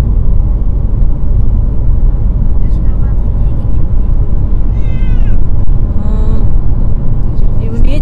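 A cat meowing once inside a plastic pet carrier, a short call that falls in pitch about five seconds in, over the steady low road rumble of a car cabin.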